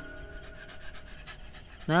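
Beagle panting softly, with its mouth open.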